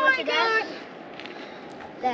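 A person's voice in the first half second, then a faint steady outdoor background with a few light ticks.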